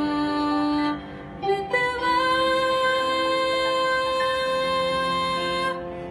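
A young woman singing a Hindi film song cover solo: a held note, a short break about a second in, then one long sustained note of about four seconds that ends just before the close.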